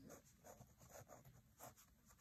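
Pen writing on paper: faint, short scratching strokes as a word is written out.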